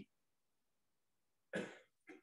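Near silence, then about a second and a half in a single short, breathy cough from an elderly man.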